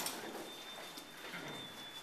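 Shuffling footsteps and rustling coats of several people crowding into an elevator, with a few faint clicks and a thin, steady high whine underneath.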